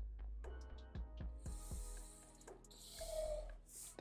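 Quiet background music, with a thick-nibbed marker pen drawn along a ruler across paper: scratchy strokes at about one and a half seconds and again near the end, one with a brief squeak.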